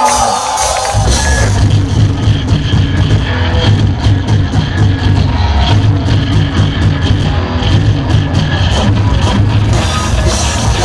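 A live rock band (electric guitars, bass and drums) kicks into a song about a second in and plays loudly, with steady drum and cymbal hits. Before that comes the tail of the singer's held shout.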